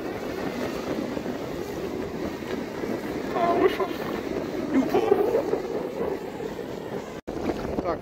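Small sea waves breaking and washing over a shallow sandy shore, with wind buffeting the microphone. The sound drops out for an instant near the end.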